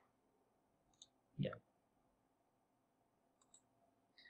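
Two faint computer mouse clicks, one about a second in and one near the end, with a short spoken "yeah" between them; otherwise near silence.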